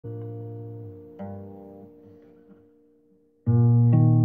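Acoustic guitar: a chord picked and left to ring, a second one about a second later, both fading almost to silence, then a much louder chord struck just before the end.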